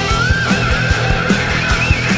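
Instrumental heavy fuzz rock: a steady drum beat under distorted guitars, with a high lead line bending and wavering up and down in pitch.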